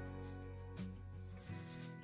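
Soft pastel stick rubbing in a series of short strokes across velour pastel paper, over quiet acoustic guitar background music.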